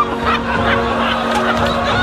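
A crowd's short excited cries and calls over steady background music.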